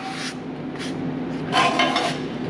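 Rubbing and scraping as a rusty axle hub is shifted by gloved hands against a steel beam, in short patches over a steady low shop hum.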